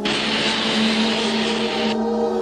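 A steady rushing hiss of air, a science-fiction airlock sound effect, lasting about two seconds and cutting off near the end, over sustained ambient music tones.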